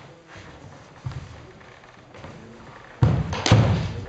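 Thuds from a longsword fencing bout, fencers' stamping steps and strikes on a wooden sports-hall floor: a light thud about a second in, then two heavy thuds about half a second apart near the end.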